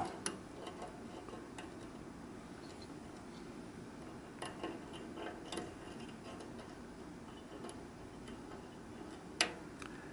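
Faint, scattered clicks of a lock pick and tension wrench working the pins inside a PacLock padlock's pin-tumbler lock, with a small run of clicks midway and a sharper click near the end.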